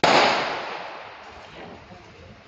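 A firecracker going off close by: one sharp bang at the start, its sound dying away over about a second and a half.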